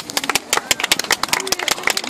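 Applause from a small group of people close by: quick, irregular hand claps that start suddenly and keep going.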